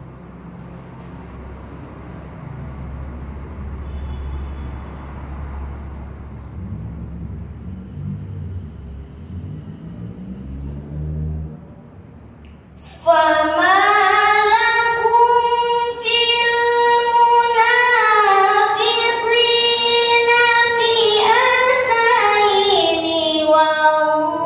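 Low rumbling room noise, then about halfway through a woman begins melodic Quran recitation (tilawah), with long held notes that slide slowly in pitch.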